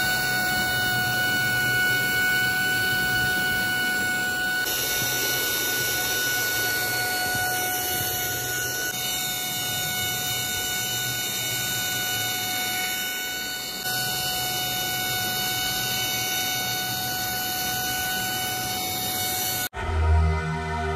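Small DC motor spinning a propeller on a battery-powered toy fan car: a steady high whine over an airy hiss.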